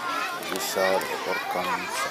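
Children's voices talking, high-pitched and indistinct.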